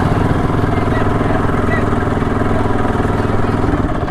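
Yamaha R15 motorcycle's single-cylinder engine idling steadily, heard close up.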